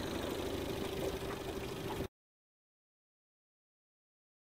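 Outboard motor of a small fishing boat running at low speed, a steady hum with a faint constant tone, cutting off suddenly about halfway through.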